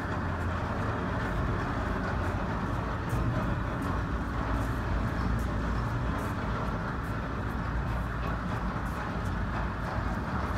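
A steady low mechanical rumble of machinery, with faint scattered clicks.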